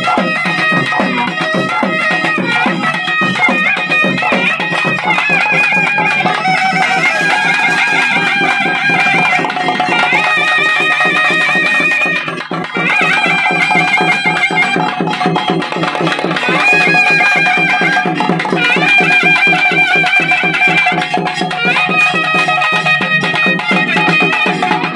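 Traditional South Indian festival music: a high, wavering reed pipe plays a melody over fast, steady drumming.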